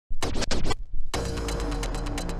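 A vinyl record scratched by hand on a turntable, three or four quick strokes. About a second in, a hardcore techno track starts playing off the vinyl with a steady beat over deep bass.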